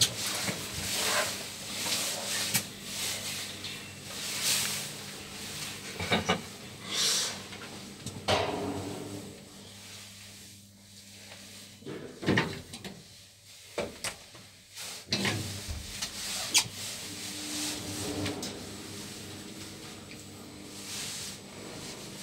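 KONE traction elevator car travelling in its shaft: a steady low hum with intermittent knocks, clicks and rubbing noises from the moving car.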